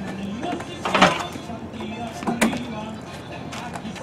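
Upright piano rolling on a moving dolly out over a doorway threshold toward a metal ramp, with one sharp knock about two and a half seconds in. A man's strained grunt of effort comes about a second in.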